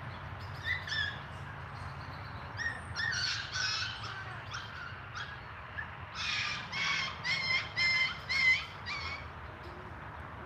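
A small bird calling in short chirps: a few scattered calls early on, then a run of about six in a row in the second half. A steady low hum runs underneath.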